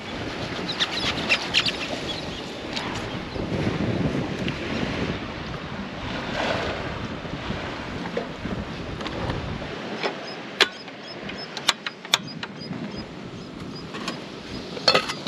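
Wind on the microphone over moving sea water. About ten seconds in it turns quieter and thinner, with a few sharp clicks.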